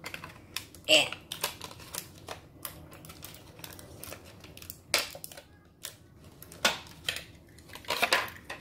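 Clear plastic toy packaging crackling and clicking in a child's hands as a die-cast toy car is worked free of it, with irregular sharp clicks throughout.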